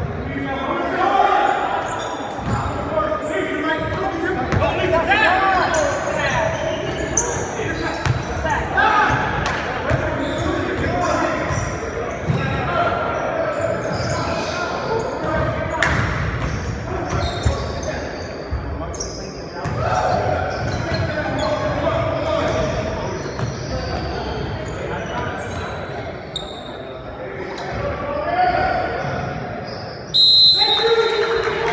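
Basketball dribbling on a hardwood gym floor, with repeated bounces and voices calling out, all echoing in a large gymnasium.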